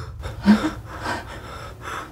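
A woman sobbing in short, gasping breaths, the loudest gasp about half a second in.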